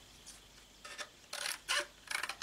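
A few short rustles and clicks of packaged scrapbook embellishments and their plastic packets being handled in a plastic storage caddy, starting about a second in after a very quiet start.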